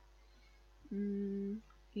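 A woman's drawn-out hesitation sound, a hummed 'mmm' held on one flat pitch for under a second, in a pause between sentences. The start of her next word follows right at the end.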